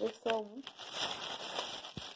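Plastic grocery packaging crinkling and rustling as it is handled, for about the last second and a half.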